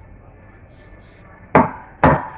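Stainless steel milk pitcher of steamed milk knocked down on the counter: one sharp knock about one and a half seconds in and another at the very end. These are the taps a barista gives the pitcher to burst big bubbles in the foam before pouring a cappuccino.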